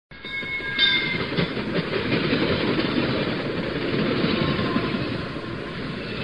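Recorded train running on the rails: a steady rumble and rattle of the cars, with a few thin high tones in the first second.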